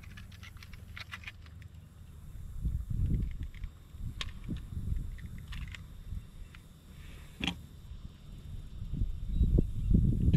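Scattered clicks and knocks of handling as a bass is hung on a hand-held fish scale, with louder thumps about three seconds in and near the end. A steady low rumble runs underneath.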